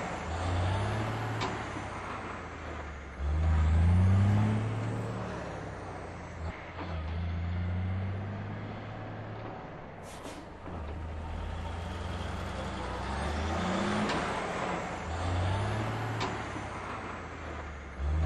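Truck engine revving up again and again, each rev rising in pitch and then holding steady before falling away, with a short high hiss about ten seconds in.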